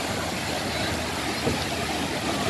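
Small waves breaking and washing up on a sandy beach, a steady rushing noise.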